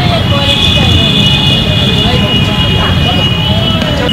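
Outdoor ground ambience dominated by a loud, uneven low rumble, with faint distant voices and a steady high-pitched tone.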